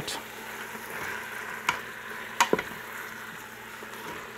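Beef cubes sizzling in a hot Instant Pot's stainless steel inner pot on sauté while being stirred with a wooden spoon, a steady hiss with two sharp clicks of the spoon against the pot in the middle.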